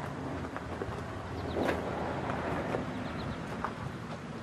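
Outdoor background of wind on the microphone over a steady low hum, with faint crunching footsteps on gravel as the camera moves.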